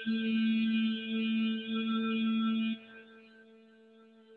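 A voice chanting a long, steady "Aaa" on one held pitch, the A-kara chant of yoga relaxation. It starts abruptly and stops about three seconds in, over a faint steady drone.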